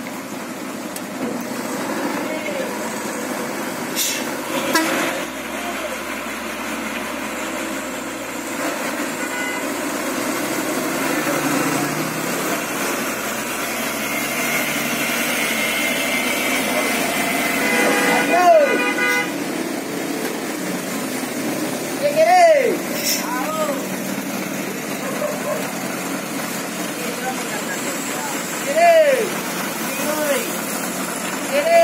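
Mitsubishi Fuso heavy truck engine pulling hard on a steep, wet hairpin climb where trucks lose traction. It grows louder over several seconds, then eases. Short rising-and-falling shouts ring out three times in the second half.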